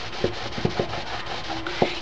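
Cloth dampened with acetone rubbing back and forth over a cardboard milk carton's printed surface, scrubbing off the ink. There are a few light knocks among the rubbing strokes.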